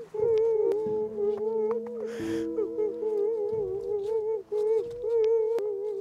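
Eerie horror-style background music: a wavering, hum-like lead tone over held low drones, with a brief hiss about two seconds in.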